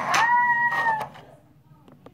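A girl's high-pitched squeal, one held steady note lasting about a second, followed by a light click near the end.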